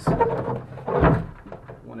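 Wooden knocks and rubbing from the hinged cedar-plywood platform box being handled, with the loudest thump about a second in.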